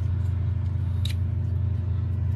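A farm machine's engine running steadily, a low even hum, with a single light click about a second in.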